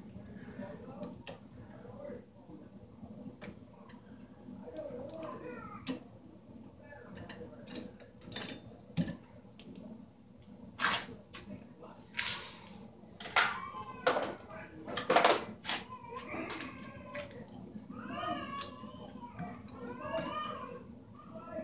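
Hands working wires in a metal junction box: scraping and rustling as wires are twisted together and wire nuts screwed on, with a string of louder rustles in the middle.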